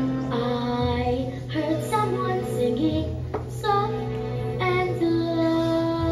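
A child singing a slow melody over instrumental accompaniment, holding a long note near the end.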